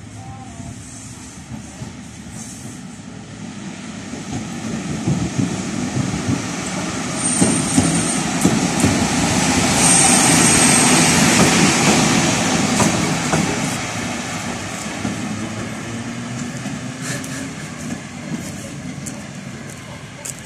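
PKP Intercity EP07 electric locomotive passing slowly during shunting. Its running and rolling noise grows as it approaches, peaks as it goes by about ten seconds in, then fades as it moves away. A couple of brief high-pitched squeals come as it passes.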